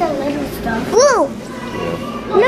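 A young child's voice: one short, high call that rises and falls in pitch about a second in, with other people talking in the background.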